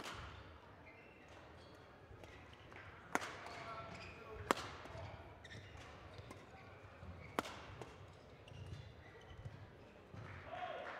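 Badminton rally: rackets striking the shuttlecock with sharp cracks, four hits spaced one to three seconds apart. Short squeaks of court shoes on the floor come between the hits.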